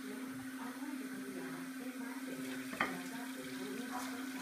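Water running from a bathroom sink tap as a steady hiss over a steady low hum, with one short click about three seconds in.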